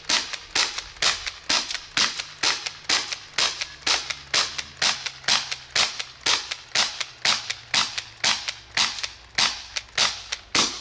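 Homemade multi-barrel BB gun built from several small CO2 BB guns, firing a steady string of sharp pops about three a second as its magazine is emptied.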